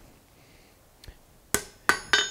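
Hammer striking red-hot iron on an anvil: two sharp blows about a third of a second apart near the end, after a faint tap about a second in. These are deliberately light blows setting a forge weld.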